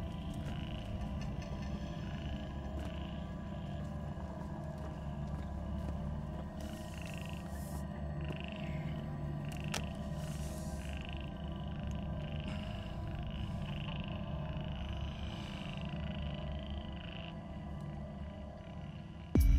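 Frogs calling in short, evenly repeated croaks, about two a second, over a low, steady music drone, with a couple of brief rustles.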